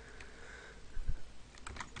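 Typing on a computer keyboard: a handful of light keystrokes, most of them bunched near the end.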